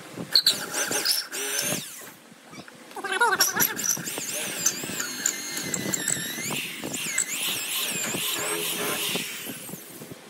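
Corded electric drill boring through a wooden board. Its motor whine wavers up and down in pitch as the trigger and the load on the bit change. It pauses briefly about two seconds in, then runs steadily until it stops near the end.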